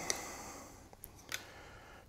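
A few faint ticks and creaks from a Danish frame saw's wooden toggle stick being turned to twist the tensioning cord, which tightens the blade.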